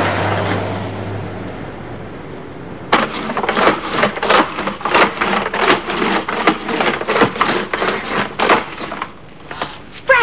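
A soft wash of noise fading away, then a run of sharp wooden knocks, about two a second and slightly uneven, lasting some six seconds.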